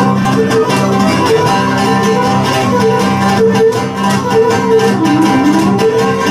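Cretan lyra playing a bowed melody over strummed laouto accompaniment, a steady instrumental tune with a brief sliding note near the end.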